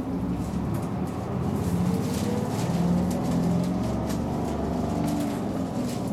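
Inside a city route bus, its diesel engine pulling the bus forward in slow traffic: the engine note rises and grows louder to a peak about halfway through, then eases off.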